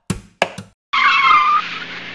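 Logo-sting music: two short guitar strums, then about a second in a loud screeching sound effect with a wavering squeal that trails off into a hiss.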